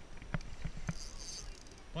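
Spinning reel being cranked against a hooked fish: a few sharp clicks and a brief high hiss about a second in.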